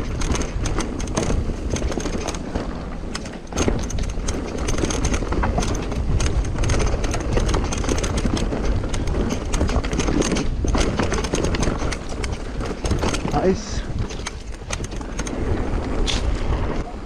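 Mountain bike ridden fast down a rough dirt trail, heard from the bike's own rider: tyres rolling over the dirt while the bike rattles with many sharp clicks and knocks over a constant low rumble.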